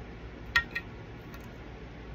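Light clicks of wooden toothpicks and long fingernails knocking on a hard dresser top: a sharp click about half a second in, a softer one just after, and a faint tick later.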